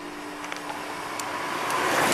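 A group of road bicycles rides past close by, the tyre and wind noise growing steadily louder as the riders near.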